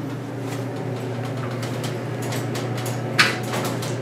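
Elevator doors sliding shut and the car starting upward, over a steady low hum, with a brief sharp click about three seconds in.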